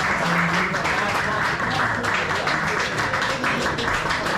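Audience applause after a poem ends: a steady wash of many hands clapping, mixed with crowd voices.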